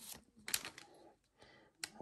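Faint rustle of a foil trading-card pack wrapper as the cards are slid out of it, with two short sharp ticks, about half a second in and near the end.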